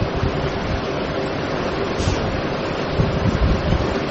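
Steady rushing background noise, like hiss, with a faint steady hum beneath it.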